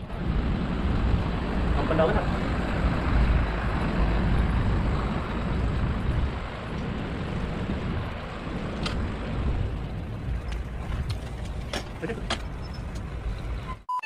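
Steady rushing wind and road noise, heaviest in the low end, from riding a bicycle along a street with a camera mounted on the bike. A vehicle is close by at the start, and a few sharp clicks come in the second half.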